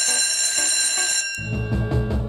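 An electric school bell rings steadily, then cuts off about a second and a half in, and music with a steady drum beat starts.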